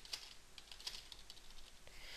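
Computer keyboard typing: a quick, faint run of irregular keystrokes as a short line of text is typed.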